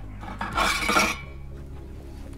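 A metal tool scraping and clinking against the metal of a Roccbox pizza oven's wood burner as the burning wood is pushed down to revive flames that were dying at the back. One brief rasping scrape with a metallic ring, about half a second in.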